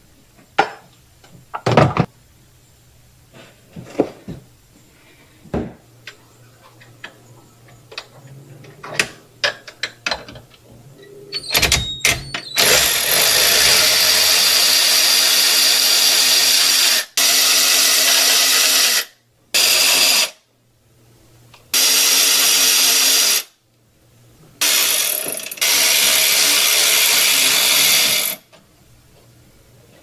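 Scattered light clicks and knocks of parts being handled, then a cordless electric ratchet running in five bursts of one to four seconds each, starting and stopping abruptly. It is backing out the bolts on the carburetor of a Sea-Doo 787 twin engine.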